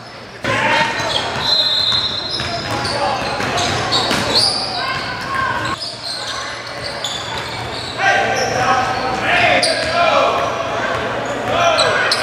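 A basketball bouncing on a hardwood gym floor during a game, with players' voices echoing through the large hall.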